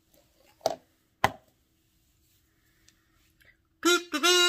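Two sharp taps about half a second apart over a faint steady hum; just before the end a loud, buzzy held tone begins.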